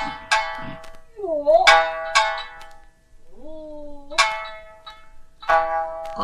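Shamisen playing a rōkyoku (naniwa-bushi) accompaniment: sharp single plucked notes spaced apart, one bending down and back up in pitch, and a long rising slide just before the fourth second.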